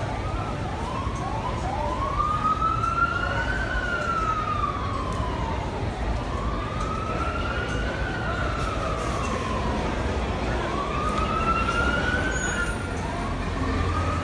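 Emergency vehicle siren in wail mode. After a couple of short quick rises at the start, it sweeps slowly up and down three times, each wail about four seconds long, and a fourth begins near the end, over a steady low rumble.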